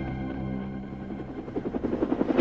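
Soft ambient music fading out, giving way about halfway through to the fast, steady chop of a helicopter's rotor.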